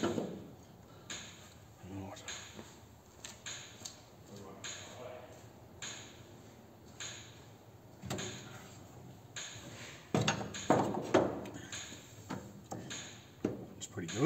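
Irregular knocks and clunks of hand tools and wooden body framing being handled and shifted about.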